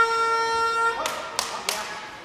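Sports-hall timing horn sounding one steady, pitched blast for about a second, followed by two sharp knocks.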